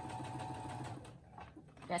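Electric computerized sewing machine stitching forward slowly along a seam, a steady motor whine with fast, even needle strokes that fades about a second in.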